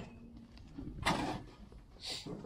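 A man's single shouted call to cattle about a second in, over a faint low rumble of background noise.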